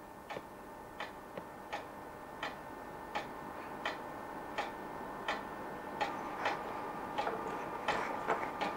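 A clock ticking steadily and faintly, a stronger tick about every three-quarters of a second with fainter ticks in between.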